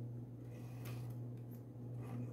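Faint ticks and rustles of thin macramé cord being handled and drawn into knots by fingers, a few soft clicks spread over the two seconds, over a steady low hum.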